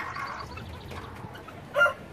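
Chickens clucking faintly, then near the end a short loud call from a rooster beginning to crow.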